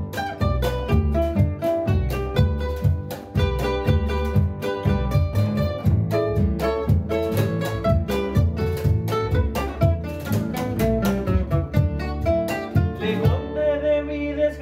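An acoustic folk ensemble playing an instrumental passage: two nylon-string classical guitars and an upright double bass, with percussion on a wooden box drum played with a wire brush and a stick. The percussion drops out a little before the end.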